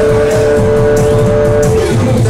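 Live Latin band music: an electronic keyboard holds one long steady synth note that bends downward near the end, over bass and electronic drums.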